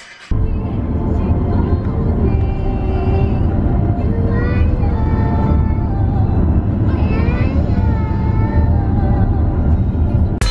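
Steady low rumble of road and wind noise inside a moving car, starting abruptly just after the start. A voice rises and falls over it a few times.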